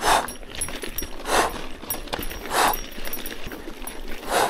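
A cyclist breathing hard while pedalling uphill, one heavy breath about every 1.3 seconds, over the crunch and rattle of tyres on loose gravel.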